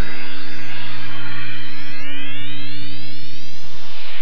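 Synthesizer music: a held low drone, with an electronic sweep rising in pitch through the second half.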